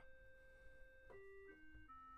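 Faint electronic keyboard notes: one note held for about a second, then three shorter notes stepping down in pitch, as chords for the song are tried out.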